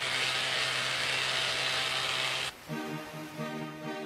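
A loud, steady rush of noise with a low hum beneath it cuts off sharply about two and a half seconds in. Soundtrack music with a beat starts right after.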